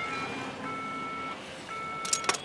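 Telephone tone: an electronic two-note beep, each about two-thirds of a second long, repeating roughly once a second.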